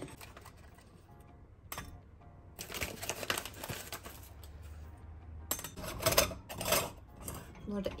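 A paper coffee bag rustles as ground coffee is poured into a stainless steel moka pot, followed by a run of metallic clicks and scrapes as the pot is handled and its two halves are fitted together.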